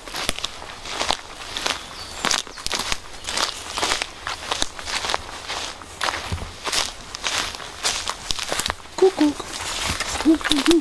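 Footsteps walking over a pine-forest floor of moss, needles and twigs, about two or three steps a second, with light crackling.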